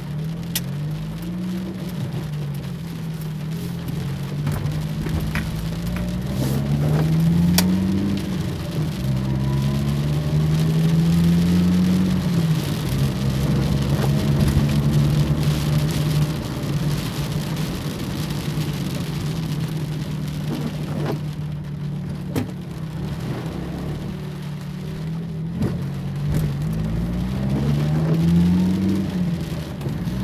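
A car's engine heard from inside the cabin while driving, rising in pitch several times as it accelerates and then dropping back. Heavy rain falls on the roof and windshield, with scattered sharp drop impacts.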